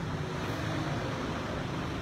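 Steady background noise with a faint low hum and no distinct event.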